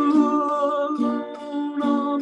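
A man singing or humming a held, slightly wavering note over strummed acoustic guitar chords, with a strum about once a second.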